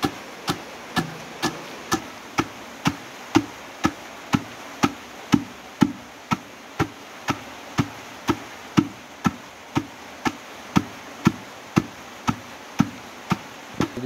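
Wooden pestle pounding red-skinned kernels in a stone mortar, a sharp knock about twice a second in a steady rhythm.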